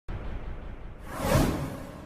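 Whoosh sound effect for a title-graphic reveal: a low rumble, then a swelling swoosh that peaks about a second and a half in and fades away.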